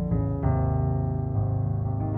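Sampled felt-muted piano (UVI Modern U, sordino) with its timbre shifted down, playing soft sustained chords with a full, strong bass. New chords come in just after the start, about half a second in, and again past a second.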